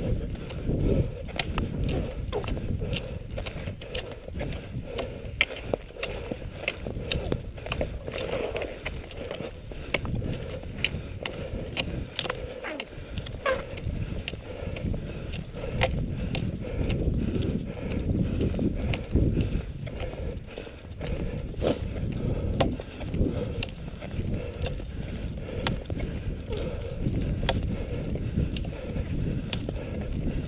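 Nordic skiing on a snowy trail: skis swishing over the snow and ski poles planting in short irregular clicks, over a steady low rumble of wind and movement on the body-worn microphone.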